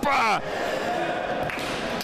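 A short exclamation from a man's voice falling in pitch, then the steady reverberant noise of an indoor futsal hall, with spectators and players during play.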